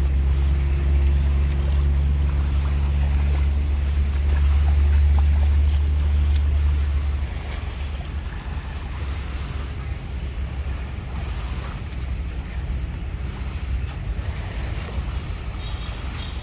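Wind buffeting the microphone at the shoreline: a loud low rumble that drops away about seven seconds in, leaving a softer steady rush of wind and shallow water.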